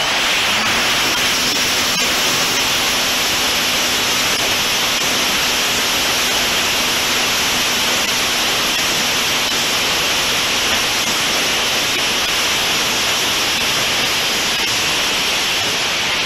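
Electric motor and propeller of a Multiplex Heron RC glider running under power in a climb, heard from the onboard camera. The prop wash and airflow over the microphone make a loud, steady rushing noise, with a faint low hum under it for the first ten seconds or so.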